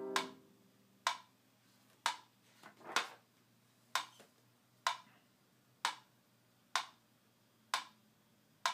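Metronome clicking steadily at about one click a second, after the last C minor piano chord of the exercise fades out at the start.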